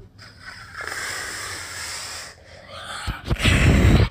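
A person blowing hard into the microphone as the wolf's huff and puff: a long breathy hiss, then a louder gust about three seconds in that booms and overloads the mic.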